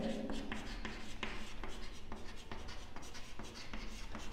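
Chalk writing on a chalkboard: a quick run of short scratches and taps as letters are written out.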